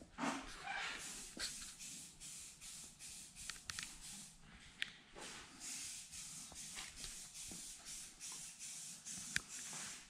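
Faint hissing that swells and fades, with scattered light clicks and taps.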